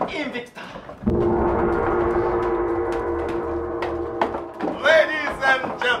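A gong struck once about a second in, its many overtones ringing on for about three seconds as they slowly fade.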